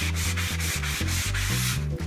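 Hand sanding block rubbed in quick back-and-forth strokes over dried milk paint on a wooden tabletop, sanding through the paint to distress it so the wood shows.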